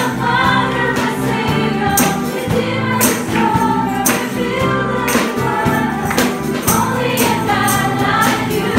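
Live gospel worship music: a group of women singing together over guitars, with tambourine jingles struck in time with the beat.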